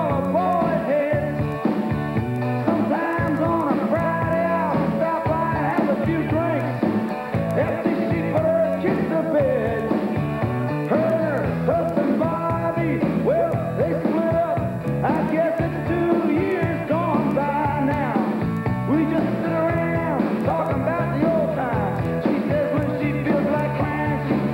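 Banjo playing an old-time tune without a break, with a second melody line sliding up and down in pitch over it.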